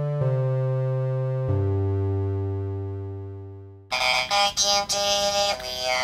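Held synthesizer chords that change twice and then fade away. About four seconds in, an abrupt cut to the buzzy, choppy robotic singing of a Teenage Engineering PO-35 Speak pocket vocal synthesizer.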